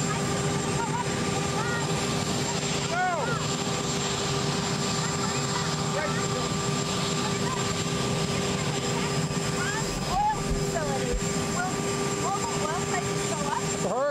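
Steady drone and whine of aircraft turbine engines running, holding several unchanging tones.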